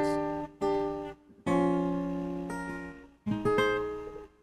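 Acoustic guitar playing the opening chords of a song: several chords struck one at a time and left to ring out, one held for about two seconds in the middle.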